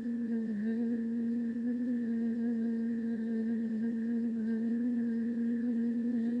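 A steady hum held on one pitch, wavering slightly now and then.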